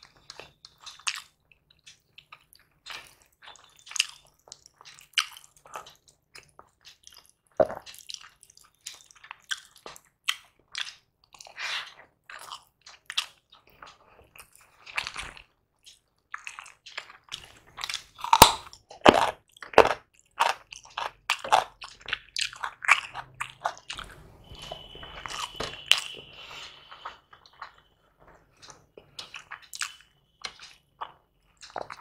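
Close-miked eating: a person chewing and biting with many small wet clicks and crackles, and a run of louder crunchy bites a little past the middle.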